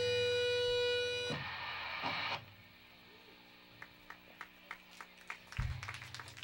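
Distorted electric guitar holding one note that rings out at the end of a song, stopping a little over a second in and fading away by about two seconds. After it come scattered hand claps from a small audience.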